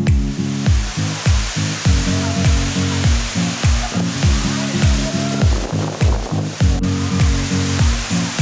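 Background music with a steady beat, a deep kick drum striking a little under twice a second, laid over a steady rush of falling water.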